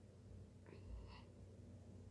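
Near silence: room tone, with a brief faint whisper-like breath of a person's voice about a second in.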